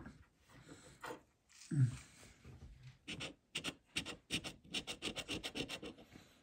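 A coin scratching the coating off a paper lottery scratch-off ticket. After a few faint handling sounds, rapid back-and-forth strokes of about five a second start about halfway through.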